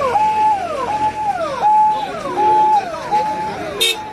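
Electronic vehicle siren cycling about every three-quarters of a second: each cycle holds a steady note and then drops in a falling glide. A single short sharp click comes just before the end.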